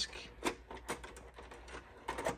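Faint, irregular mechanical clicks of a JVC RC-QC7 boombox's three-disc CD changer mechanism switching to disc 1.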